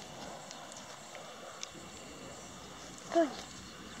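Faint rustling with a few light clicks in the first two seconds: handling noise from the phone's microphone pressed against a small terrier's wiry coat.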